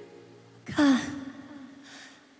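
A person's short voiced sigh, falling in pitch, about two-thirds of a second in, after a held sung note has died away.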